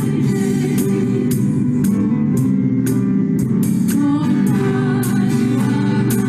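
A contemporary church worship band playing a song, with singing over guitars, keyboard and drums and a steady beat of about two hits a second.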